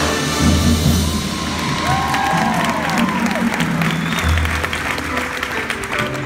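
Marching band playing, with sustained low brass notes and drums. Crowd cheering and applauding over the music, with a few voices whooping around the middle.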